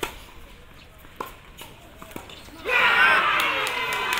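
A tennis racket strikes the ball on a serve, followed by a few more ball hits and bounces over the next two seconds. From a little under three seconds in, loud shouting voices take over.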